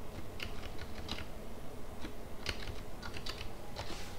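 Computer keyboard keystrokes: two short runs of key clicks, one in the first second and another from about two and a half seconds in.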